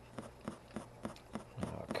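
Screw cap of a neutron bubble detector being unscrewed by hand, giving a run of faint light clicks, about three or four a second, over a steady low hum.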